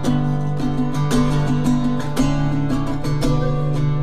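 Acoustic guitar playing a steady picked rhythm in a short gap between the sung lines of a slow song.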